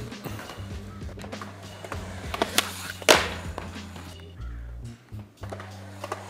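Background music with a steady bass line, and a few sharp clacks of a skateboard striking concrete; the loudest comes about three seconds in.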